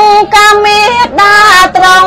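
A woman's solo voice singing Khmer smot, chanted Buddhist verse: long held notes that step between pitches, broken briefly for breath about a quarter second in and again about a second in.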